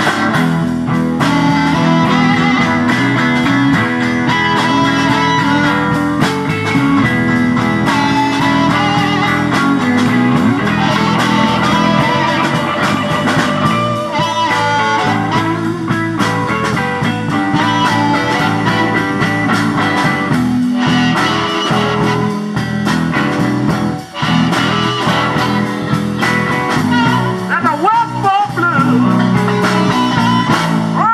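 Live electric blues band playing an instrumental passage: electric guitars, bass guitar and drum kit, with blues harmonica played through a vocal mic. The level drops briefly about three quarters of the way through.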